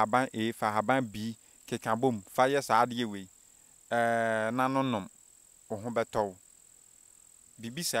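Crickets trilling steadily with a high, unbroken note, under a man's voice talking in short bursts.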